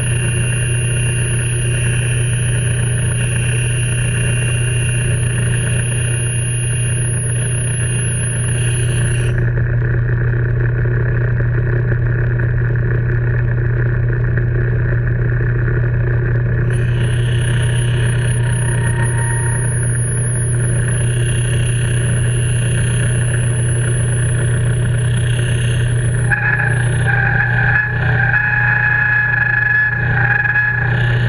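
Metal lathe running steadily with an even low hum, its spindle turning the workpiece. Near the end a higher, brighter tone joins the hum.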